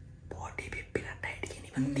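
A man whispering a few words, then starting to hum a short tune in steady, stepping notes near the end.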